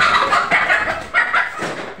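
A chicken squawking loudly in alarm, a harsh run of calls that breaks out suddenly and goes on for nearly two seconds as it is chased.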